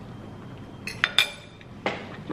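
Cutlery clinking against dishes: about four light, sharp clinks with a brief ring, starting about a second in, the last near the end.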